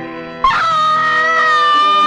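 A woman's long scream of grief starting about half a second in and held at a steady pitch, over a film's music score.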